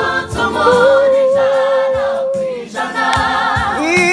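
A small gospel vocal group singing together in harmony, holding one long note through the middle before the singing moves on again.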